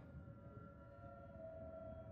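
Near silence, with a faint, steady background music drone under the pause.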